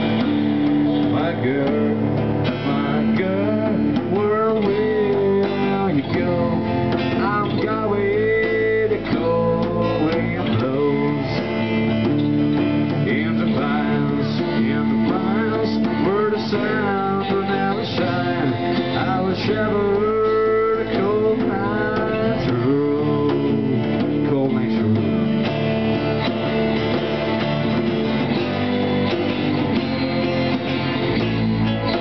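Live rock band playing an instrumental passage: strummed guitar chords over bass and drums, with a lead line of bending notes that comes and goes through most of the passage and drops out near the end.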